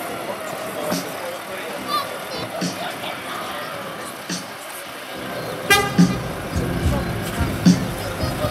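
A short vehicle horn toot about three-quarters of the way through, over distant voices. A low rumble comes in with the toot, broken by a couple of thumps.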